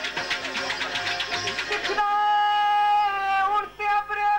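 Pothwari sher sung live with music: fast, even rhythmic playing for about two seconds, then one long steady held note that wavers and breaks off near the end.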